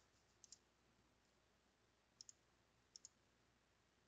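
Three faint computer mouse clicks, each a quick press-and-release pair of ticks: about half a second in, a little after two seconds, and around three seconds. Otherwise near silence.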